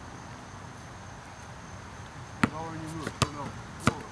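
A basketball bouncing on an outdoor asphalt court: three sharp bounces in the second half, the first about two and a half seconds in. A steady high insect tone runs underneath.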